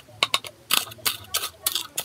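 A spoon clicking and scraping against a container as it crushes coffee grounds finer, in a quick, irregular run of sharp taps.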